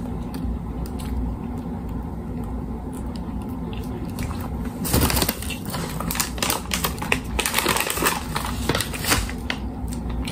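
Clear plastic bag crinkling and rustling close to the microphone, starting about halfway through as a dense run of crackles. Before it, a few faint mouth clicks from sucking on a chicken bone over a steady low hum.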